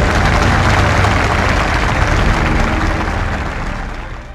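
Audience applauding, with music underneath, fading out near the end.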